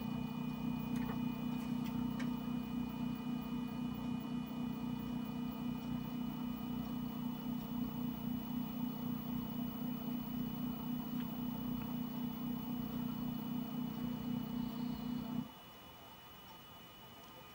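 Shapeoko 3 CNC stepper motor driving a slow Z-axis probing move, a steady low electric hum of several fixed tones. It cuts off suddenly near the end, as the probe touches the plate and the machine halts.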